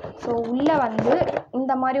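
A woman speaking, with a few short taps and rustles from a paper mailer envelope being handled.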